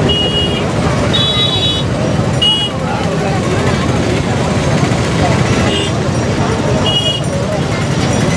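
Crowd voices over a steady traffic noise, with vehicle horns honking in about five short blasts.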